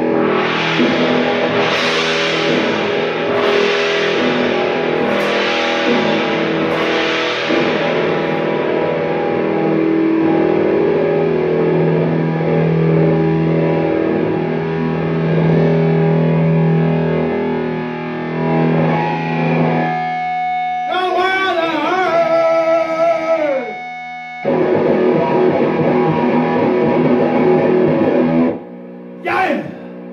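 Kramer electric guitar played with heavy distortion: sustained blues-rock chords and notes, with sharp crash-like hits about every second and a half over the first several seconds. Past the middle the notes slide steeply down in pitch, and the playing stops abruptly near the end, followed by a quick pitch sweep.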